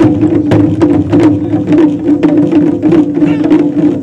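Wadaiko (Japanese taiko) ensemble drumming together with sticks, a dense, fast run of loud strikes with no pause.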